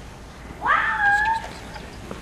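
A single high-pitched call from a person's voice, about half a second in: it swoops up and is held for just under a second before stopping.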